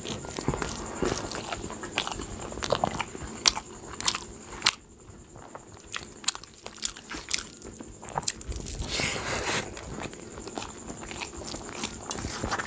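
Close-up wet chewing and lip-smacking with many short sharp mouth clicks, from a person eating rice mixed with kadhi by hand. Fingers squish through the soft rice on a steel plate, and a longer hissing stretch comes about nine seconds in.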